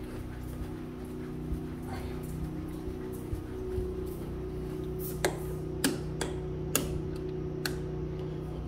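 A steady machine hum with a few sharp clicks in the second half.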